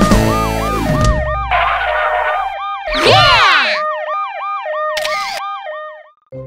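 Cartoon emergency-vehicle siren sound effect, a quick rise-and-fall wail repeating about two and a half times a second, doubled higher in the second half. The song's music fades out under it in the first two seconds, a falling swoop of tones sounds about three seconds in, and a brief hiss about five seconds in.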